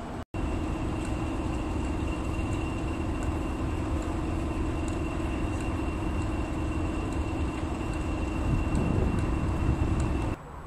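Class 31 diesel locomotive No. 31108 idling: its English Electric 12SVT V12 engine runs steadily with a thin high whine on top. There is a momentary dropout just after the start.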